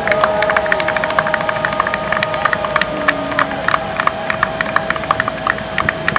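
A small crowd clapping unevenly, many separate claps, over a steady mechanical whine from a parked jet airliner or its airport ground equipment.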